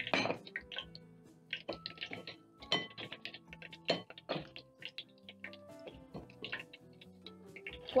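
Background music, with a few separate clinks and knocks of a metal skimmer against a glass bowl as slices of raw potato are scooped out of it, the loudest one right at the start.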